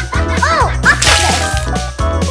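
Cheerful background music with cartoon sound effects laid over it: quick rising-and-falling pitch glides about half a second in, then a short whip-like swoosh about a second in.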